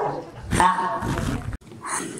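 A woman's voice through a microphone, one drawn-out utterance, cut off suddenly about one and a half seconds in.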